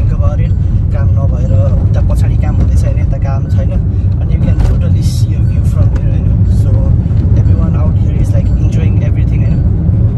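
Steady low road and engine rumble inside the cabin of a moving Hyundai Creta, with a man talking over it.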